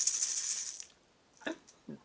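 Egg shaker shaken briefly, a quick rattling hiss that stops a little under a second in, followed near the end by a couple of short vocal noises.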